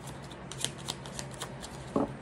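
A deck of tarot cards being shuffled by hand, a run of soft, irregular card clicks and riffles.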